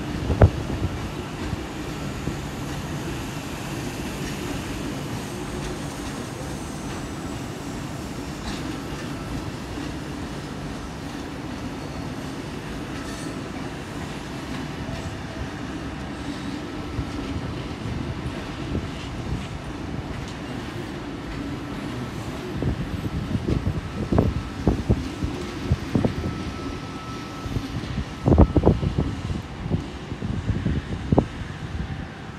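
Double-deck electric suburban train rolling through a rail yard: a steady rumble with a faint high tone, then wheels knocking over the points in clusters near the end.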